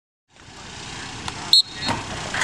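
Outdoor football practice sound fading in: a steady rush with a few sharp knocks of pads and equipment. The loudest knock comes about one and a half seconds in, with a brief high ring.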